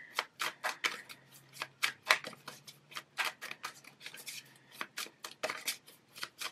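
A tarot deck being shuffled by hand, the cards slapping and flicking against each other in quick, uneven strokes, about four a second.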